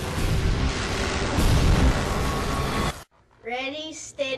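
Film soundtrack: a loud, dense roar with a deep rumble, like an explosion or rushing noise, cuts off suddenly about three seconds in. After a brief silence a high-pitched voice is heard near the end.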